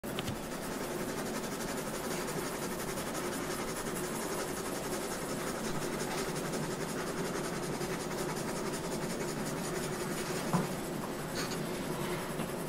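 Pencil drawing on the paper of a spiral-bound sketchpad: a steady, continuous sound of close strokes on paper. A short faint knock comes about ten and a half seconds in.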